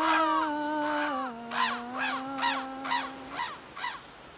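A corvid cawing in a quick run of short, arched calls, about two a second, over a voice humming a held note. The hummed note drops in pitch about a second in and stops shortly before the calls end.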